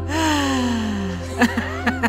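A long, drawn-out vocal sigh falling steadily in pitch for about a second, then a few short laughs, with soft background music underneath.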